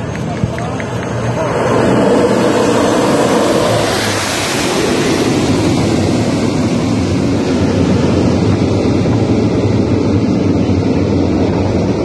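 Four Rolls-Royce AE 2100 turboprop engines of a Lockheed C-130J Hercules running loud as the aircraft rolls past close by along the road strip after touchdown. The noise swells over the first two seconds and peaks with a bright rush as it passes about four seconds in, then stays as a steady loud propeller drone while it moves away.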